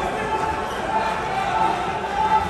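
Voices calling out in a large, echoing hall, with a steady background of arena noise.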